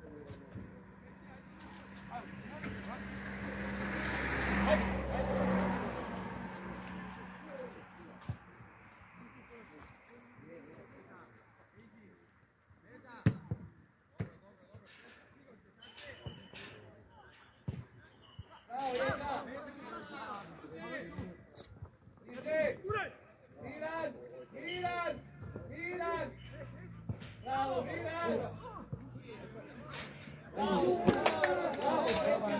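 A passing vehicle whose noise and engine hum swell to a peak about five seconds in and then fade away. About thirteen seconds in a football is kicked with a sharp thud, and from about twenty seconds on players shout during play.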